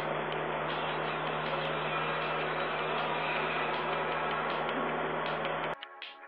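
Steady hiss with a low hum and faint ticks a few times a second, cutting off abruptly just before the end.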